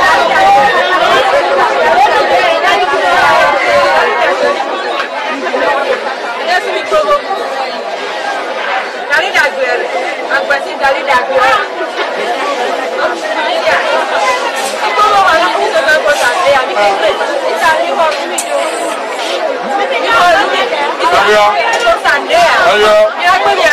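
People talking continuously, several voices overlapping in chatter.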